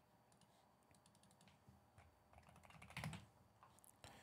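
Faint typing on a computer keyboard: scattered key clicks, bunching into a quick run of strokes about two and a half to three seconds in, as a word is typed into a search.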